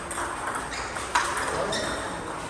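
Table tennis ball clicks in a rally: the ball striking paddles, one faced with short-pips rubber, against underspin and bouncing on the table. There are several sharp clicks about half a second apart, the loudest just after a second in, ringing in a large hall.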